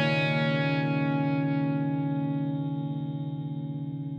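Final chord of an electric guitar played through effects, left to ring out and fading steadily, with a slight regular wavering in its tone.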